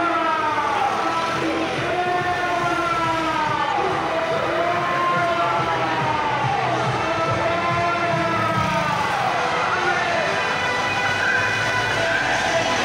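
Several sirens wailing together, their pitches sweeping up and down out of step with each other, as a motorcade of escort vehicles drives past, with the noise of the passing vehicles underneath.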